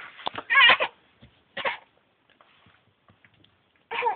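A young child's voice making a loud, wavering, sing-song cry without words, followed by a shorter one.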